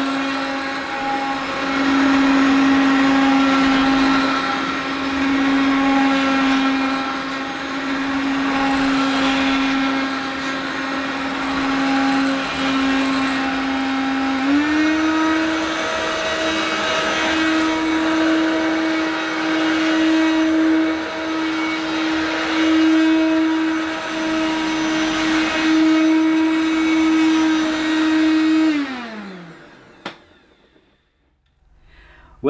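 Hoover Turbopower Boost upright vacuum cleaner's two-speed motor running on low speed, stepping up in pitch to boost about halfway through, then winding down after being switched off near the end. The motor is rough and louder than it should be: it needs some attention to run smoother and quieter.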